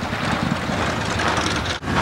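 A motorcycle engine running steadily under wind and crowd noise, with a brief sharp dropout near the end.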